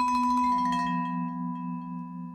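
Vibraphone: a quick flurry of mallet strikes that stops about half a second in, leaving a chord of notes ringing on and slowly fading.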